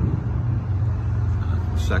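Steady low rumble of a motor vehicle engine in street traffic, with a man's voice starting right at the end.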